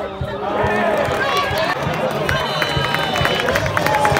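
Football stadium crowd: many voices shouting and chanting together over a steady low beat, as from a supporters' drum.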